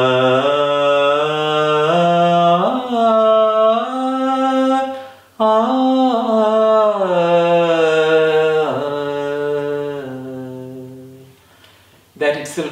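A man's voice singing the scale of the Carnatic raga Abhogi in akaram, on an open 'aa' vowel. He climbs note by note with ornamental slides between some notes, pauses briefly about five seconds in, then steps back down the scale and fades out near the end.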